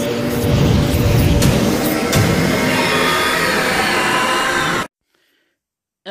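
Dark intro music and sound effects: a loud, dense swell over a few steady low tones, with a couple of sharp hits, cutting off suddenly about five seconds in.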